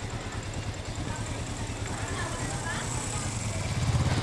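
Motorcycle engine idling with a steady, pulsing low hum, with people's voices faint in the background.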